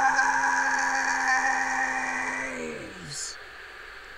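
A man's singing voice holds one long, steady note that drops in pitch and fades out about two and a half to three seconds in, followed by a short breath.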